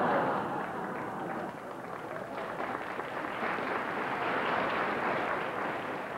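Studio audience applauding and laughing, loudest at the start and then holding steady.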